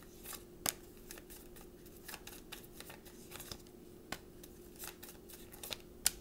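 Tarot cards being shuffled in the hands: a run of soft, irregular card clicks and slaps, one sharper snap about half a second in, over a faint steady hum.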